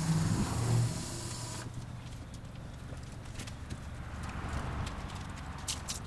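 Car wash pressure wand spraying with a steady hiss that cuts off suddenly about a second and a half in, over a low machine hum. After that, scattered light clicks.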